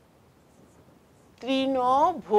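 Marker pen faintly scratching on a whiteboard while words are written, then a woman's voice drawing out a long vowel in the last half-second.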